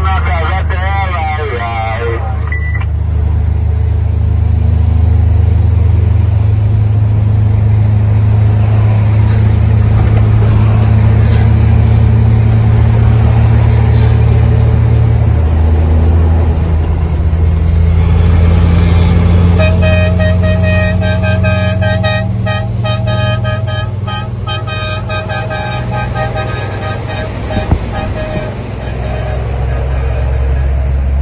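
Heavy truck's engine droning steadily, heard from inside the cab while driving on the highway; its note drops about fifteen seconds in. A sustained pitched tone with a rapid pulse sounds over the engine from about twenty seconds in until near the end.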